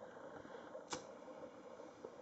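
Quiet room tone broken by a single sharp click about a second in: a pocket lighter being struck to relight its flame.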